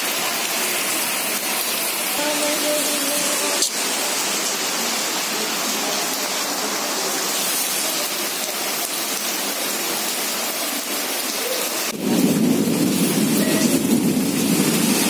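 Heavy rain pouring steadily onto a flooded street, with one sharp click a little under four seconds in. About twelve seconds in, the sound cuts suddenly to a louder, deeper wash of rain and water.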